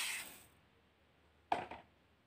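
Granulated sugar pouring into a dry nonstick kadhai, a granular hiss that trails off within the first half second. Then a single short knock about a second and a half in.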